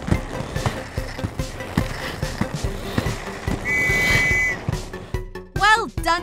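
Cartoon background music with a steady beat over a continuous rolling sound effect of roller skates on a floor. A short held high whistle-like tone sounds about two-thirds of the way through, and a voice starts near the end.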